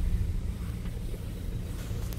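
Steady low rumble of a car's engine and tyres heard from inside the cabin while driving slowly.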